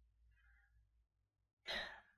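Near silence, then one short audible breath from a man close to the microphone near the end.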